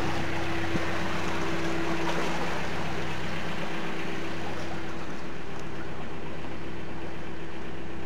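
Narrowboat diesel engine running steadily under way, a low even hum. A higher steady tone in it drops away about two seconds in.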